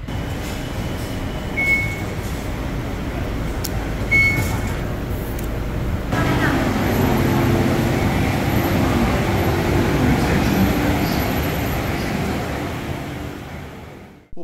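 A Bangkok BTS Skytrain pulling into a platform: its running noise swells about six seconds in, with a steady low hum from the motors, and fades near the end. Before that there is a steady station hubbub with two short, high beeps a couple of seconds apart.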